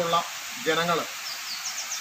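A man speaking Malayalam in short phrases with pauses, over a steady background hiss.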